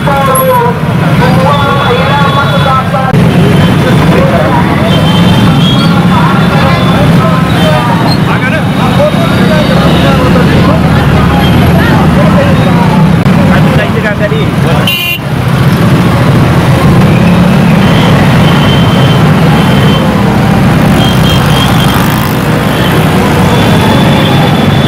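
Many motorcycle and scooter engines running at low speed in a procession, with short horn toots several times and voices of the crowd shouting over them.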